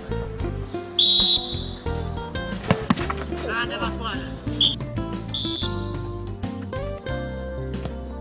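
Background music with a referee's whistle blown three times: a loud blast about a second in, then two short blasts near the middle, with voices shouting in between.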